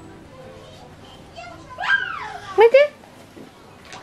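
A young child's voice: a high-pitched squeal that rises and falls about two seconds in, then a few short, loud vocal sounds.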